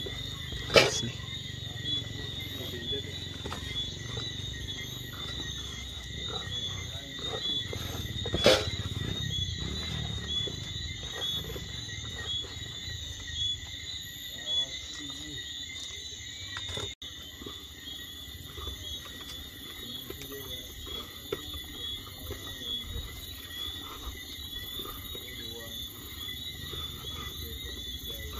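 Steady high-pitched chorus of night insects, with two sharp knocks, about a second in and about eight seconds in.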